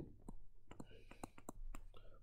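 Stylus writing on a pen tablet: an irregular run of light clicks and taps as the pen strikes and lifts from the surface.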